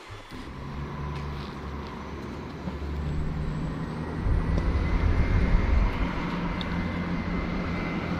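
Electric tram-train running on the track: a steady low rumble with a faint high whine. It grows louder about four seconds in as the train comes closer, and the whine rises slightly.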